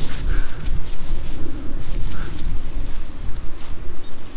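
Wind buffeting the camera-mounted microphone: a loud, unsteady low rumble.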